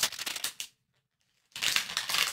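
Crinkly plastic blind bag being torn open and pulled apart by hand, a rapid crackle of wrapper noise. It stops dead for just under a second near the middle, then the crinkling starts again.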